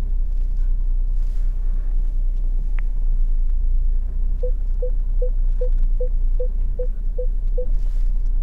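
Low rumble of the car running slowly in reverse, heard from inside the cabin. About halfway through, the parking sensor starts beeping: nine short, even mid-pitched beeps, about two and a half a second, which stop shortly before the end.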